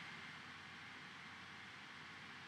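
Near silence: faint steady hiss of the recording's background noise.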